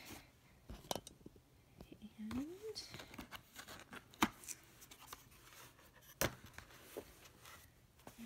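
A rigid cardboard gift box being handled and opened: a few sharp taps and knocks with soft scraping and rustling as the lid comes off and the contents are unpacked.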